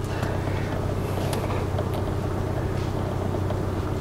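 Saab car's engine running at low revs as the car reverses slowly, heard from inside the cabin as a steady low hum.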